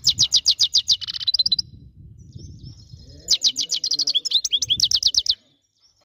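European goldfinch singing: two fast runs of high, rapidly repeated notes, the first lasting about a second and a half, the second starting about three seconds in and lasting about two seconds.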